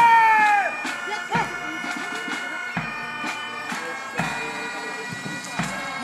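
Bagpipes playing a tune over steady drones, with a low drum beat about every second and a half.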